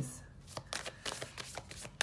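A tarot deck being shuffled and handled: a quick, irregular run of soft card clicks and flicks.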